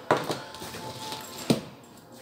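Audio cables being untangled by hand, with rustling handling noise and the metal plugs knocking against the mat twice: once near the start and once, sharper, about a second and a half in.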